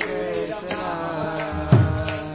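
Devotional kirtan: voices singing a chanted melody over hand cymbals struck in a steady beat, with one deep drum stroke near the end.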